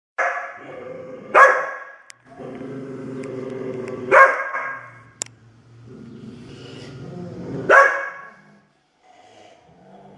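Dogs snarling and growling at each other in long, low growls, each broken off by a sharp bark, three times over. A quieter growl starts up again near the end.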